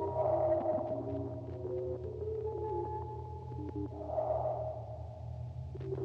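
Electronic music: a low steady drone under sustained tones that shift in pitch in steps, with two swells of a grainy, warbling sound, one at the start and one about four seconds in.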